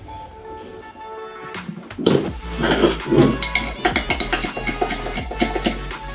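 Background music, with a metal spoon clinking and scraping against a glass boot mug as thick Frosty is stirred in it, in quick repeated clicks over the second half.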